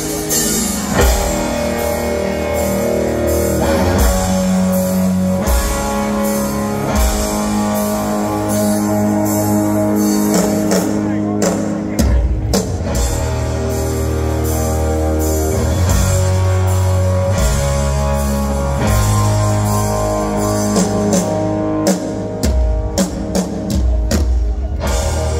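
Live hard-rock band playing loud through a stadium PA: distorted electric guitar chords with drums and bass. There are a few short stop-start hits about halfway through and again near the end.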